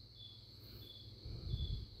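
Faint insect chirping: a short high chirp repeated about every two-thirds of a second over a steady high hum, with a brief low rumble in the second half.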